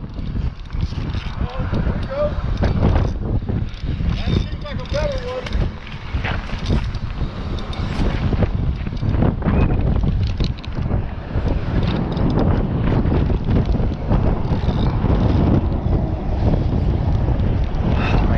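Steady wind buffeting the microphone, with scattered clicks and knocks from the spinning reel and gear being handled.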